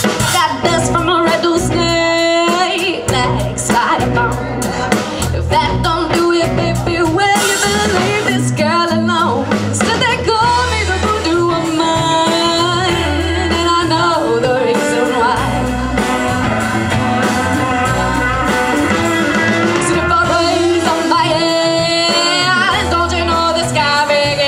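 Live blues-rock band playing: a woman singing lead over electric guitars and a drum kit keeping a steady beat.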